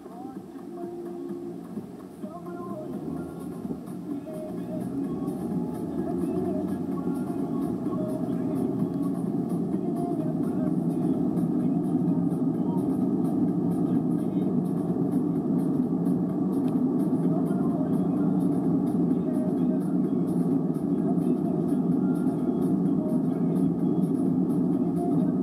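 Engine and road noise inside a moving car's cabin, growing louder over the first ten seconds or so as the car pulls away and picks up speed, then holding steady.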